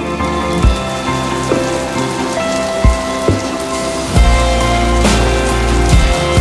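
Slow instrumental music with sustained chords over an even hiss of heavy rain, with a few scattered low thuds. A strong deep bass comes in about four seconds in.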